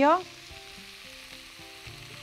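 Minced meat with tomato paste sizzling in a frying pan, a faint steady hiss.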